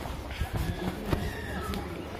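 Footsteps of a person walking on an asphalt path, irregular knocks over a low rumble on the microphone, with faint voices in the background.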